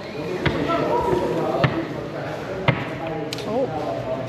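A few sharp knocks on a service counter, about a second apart, as items are handled and put down on it, with voices talking.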